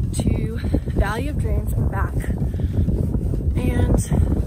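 A woman talking to the camera while wind buffets the microphone with a steady low rumble.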